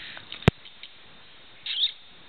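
A young baby's short, high-pitched squeak near the end, after a single sharp click about half a second in.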